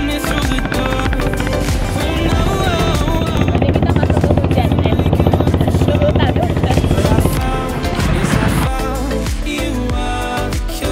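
A motorboat's engine running, a fast even drone under background music, with a woman's voice briefly over it. The engine sound stops about seven seconds in, leaving the music.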